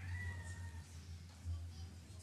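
A young child's brief high-pitched squeal, falling slightly in pitch, over a steady low hum.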